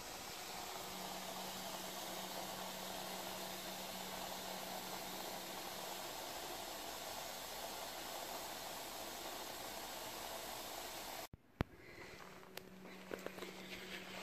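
Steady hiss with a faint low hum that cuts off abruptly a little before the end, followed by a single click and some light handling noise.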